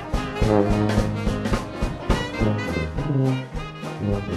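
Traditional New Orleans jazz band playing: a tuba bass line moving note by note under trumpet, trombone and saxophones, with drums keeping a steady beat.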